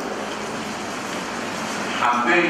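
Steady, even background noise with no clear pitch and no speech.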